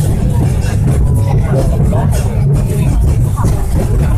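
Hong Kong Peak Tram funicular carriage running along its track, heard from inside the cabin as a steady low rumble, with passengers' voices over it.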